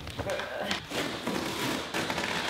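Large cardboard box being unpacked by hand: flaps and packing paper rustling and scraping, with a few dull thuds and knocks.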